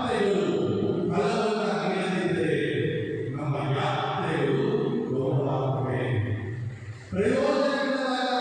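Liturgical chanting at Mass: a voice sung on a steady chanting line without break, dipping briefly about seven seconds in before going on.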